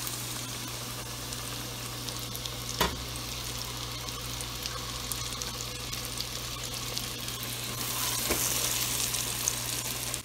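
Flour-coated chicken wings sizzling in hot oil in a stainless steel pot, a steady frying hiss that grows a little louder near the end. A single sharp click comes about three seconds in.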